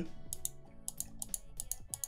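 A run of about ten quick, light computer mouse and keyboard clicks as points are placed with a mouse and the Ctrl key is pressed.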